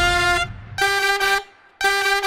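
A held tone cuts off just under half a second in, then two short horn honks follow, about a second apart.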